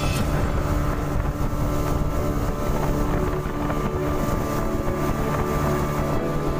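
Motorboat engine running steadily at speed, a constant drone, with wind buffeting the microphone.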